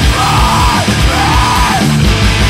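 Post-hardcore/screamo band playing at full volume: distorted guitars and driving drums with a repeating arching melody, and yelled vocals over the top.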